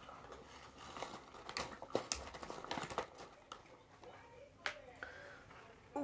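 Scattered light clicks and taps of objects being handled on a tabletop, with faint vocal sounds from a woman.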